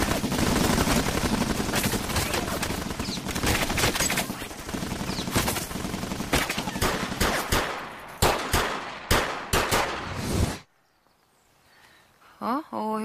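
Heavy gunfire in a shootout: rapid, continuous automatic fire that thins out to separate shots, then stops suddenly near the end.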